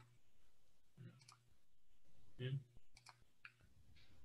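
Near silence with a few faint, short clicks and a brief, quiet 'yeah' about halfway through.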